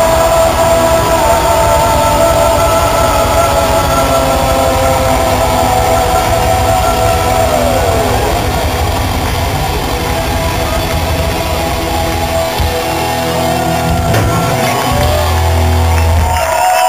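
Live heavy-metal band holding out a long final chord on distorted electric guitars, with drums underneath. One note slides down about halfway through.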